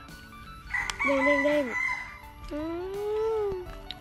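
A rooster crowing: a short held note that drops off, then a longer note that rises and falls, over faint background music.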